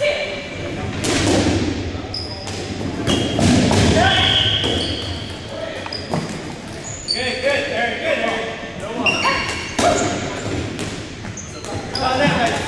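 Dodgeball game in a gym: rubber dodgeballs thudding and bouncing off the hardwood floor, sneakers squeaking, and players shouting, all echoing in the large hall.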